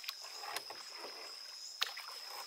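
A single bamboo oar worked in lake water from a small concrete boat, giving soft swishes of water with each stroke. One sharp knock near the end, the oar shaft striking its bamboo rowlock peg.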